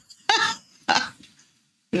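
Two short non-word vocal sounds from a person's throat, each lasting about a third of a second.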